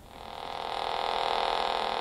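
A held note on a home-built 8-bit Arduino synthesizer: a steady, buzzy tone that swells slowly in volume because the envelope generator's attack is set very long.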